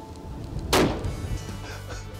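A single rifle shot about three quarters of a second in, with a short ringing tail, over soft background music.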